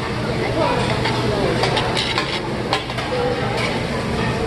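Steak and chicken sizzling on a flat steel teppanyaki griddle, a steady frying hiss. A quick series of sharp metal clicks and scrapes, a spatula on the griddle, comes in the middle.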